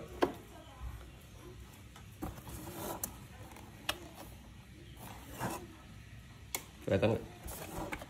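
Scattered small clicks and handling noise of hands working a stripped wire into a plastic connector on a scooter's wiring.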